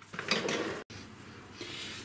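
Glass teapot and steel tea infuser being handled on a countertop: a short scraping, clattering noise of under a second that cuts off abruptly, followed by quiet.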